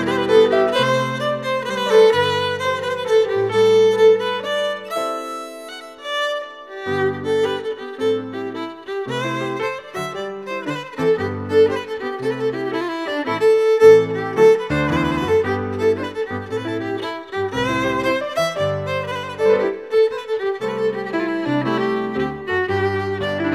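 Fiddle playing a lively traditional English dance tune over a chordal piano accompaniment that keeps the beat. The low accompaniment drops out for a couple of seconds about five seconds in, then comes back.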